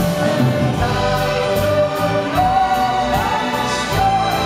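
Singing voice with a large children's string orchestra of violins and cellos playing along in a pop song, with a long held note a little after the middle.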